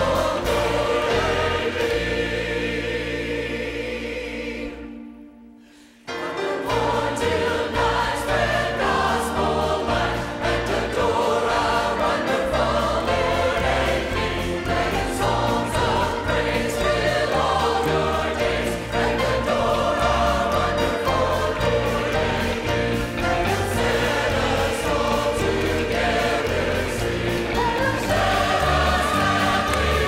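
Church choir singing with a band of piano and guitars. The music fades away about four to six seconds in, then the choir and band come back in suddenly and carry on.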